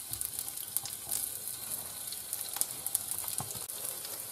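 Wild asparagus sizzling gently in a little olive oil in a frying pan over low heat: a steady high crackle with fine pops.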